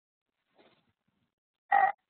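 Near silence on the webinar audio line, then just before the end a short, throaty vocal sound from the male presenter, like a brief 'mm' or 'uh'.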